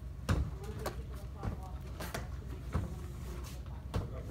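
Faint voices over a low steady hum, broken by several sharp knocks and taps, the loudest about a third of a second in and again about two seconds in.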